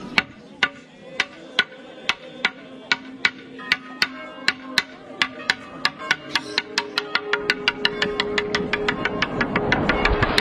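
Intro music: sharp clicks that speed up steadily, from about two a second to about six, over a held low tone that steps up in pitch about six seconds in, building towards fuller music.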